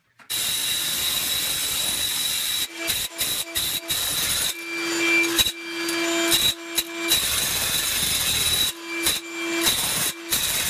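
Makita electric demolition hammer with a wide chisel bit chipping thinset off a concrete slab: loud continuous hammering that starts suddenly just after the start and breaks off briefly several times in the second half, with a shop vacuum nozzle held at the bit.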